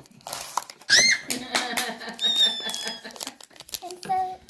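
A short high-pitched squeal about a second in, then a thin, slightly falling squeaky tone near the middle, over low talk. Light crinkling and handling of a foil trading-card pack.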